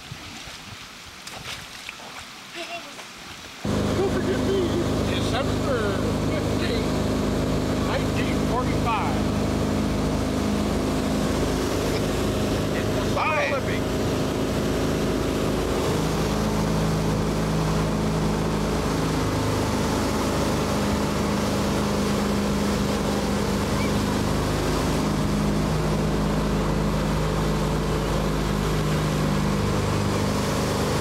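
Speedboat engine running steadily at speed, with the rush of water and wind; it starts abruptly about four seconds in, after a quieter stretch of faint splashing and voices.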